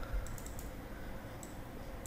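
A few light, sharp clicks of a computer mouse: a quick cluster about a third of a second in and one more near a second and a half.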